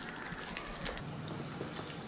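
Hands mixing a thick semolina and curd batter in a steel bowl: faint, soft wet mixing sounds with a few light ticks.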